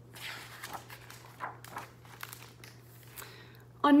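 Pages of a picture book being turned by hand: a series of soft paper rustles and brushes over about three seconds.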